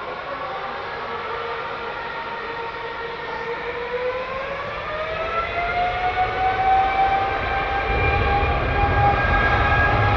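The GE90 engines of a British Airways Boeing 777-200 spooling up for takeoff. A whine rises in pitch about three to four seconds in and settles into a steady higher tone, and a deep rumble joins near the end as thrust builds.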